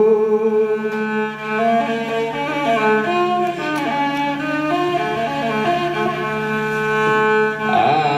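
A man chanting a slow hymn into a microphone over sustained musical accompaniment with a steady low drone. His long held notes change pitch now and then.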